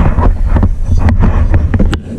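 Handling noise from the camera being picked up and moved: a heavy rumble on the microphone with irregular knocks and rubbing.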